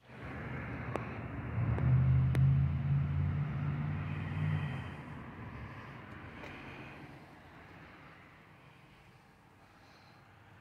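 A motor vehicle's engine rumble with a low hum. It swells in the first two seconds, then fades away gradually over the rest, as a vehicle passing and receding does. A few light clicks sound in the first few seconds.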